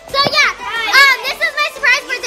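A group of young girls' high-pitched voices, several at once, calling out and squealing excitedly with rapidly rising and falling pitch, none of it clear words.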